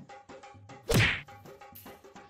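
A single loud whack about a second in, over background music with a steady percussive beat.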